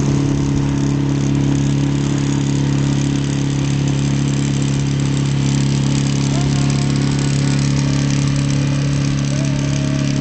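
Boat engine running steadily while the boat is under way, a constant low drone with no change in speed.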